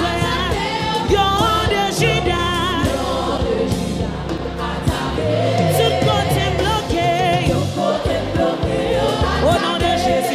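Live gospel worship song: a woman singing lead into a microphone, her voice wavering with vibrato, backed by a choir and a band with bass and drums.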